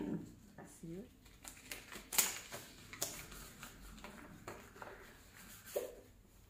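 Ansell Gammex powdered latex surgical glove being pulled on and worked over the hand: soft rubbing and rustling of the latex, with a few sharp clicks, the loudest about two seconds in. Brief faint vocal sounds near the start and end.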